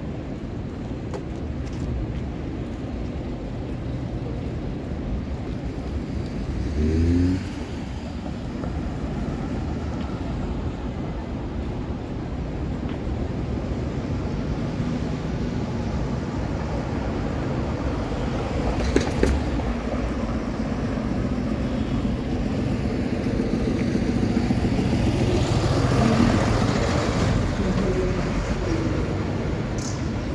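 City street traffic: a steady rumble of cars running past, with a brief louder sound about seven seconds in, a sharp clack around nineteen seconds, and a vehicle passing close that swells and fades near the end.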